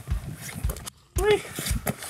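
Footsteps crunching on loose shale scree in a steady climbing rhythm, about two steps a second, from a man hauling a heavy load uphill. A short voiced grunt that rises and then falls comes from him just past the middle.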